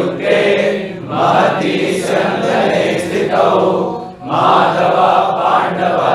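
A group of voices chanting a Sanskrit verse together in unison, in a few sung phrases with short breaks between them.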